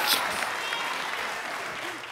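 Studio audience applauding and cheering, dying away over the two seconds.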